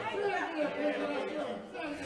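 Quiet speech, well below the level of the amplified sermon around it.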